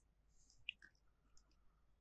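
Near silence, broken by one faint short click about two-thirds of a second in.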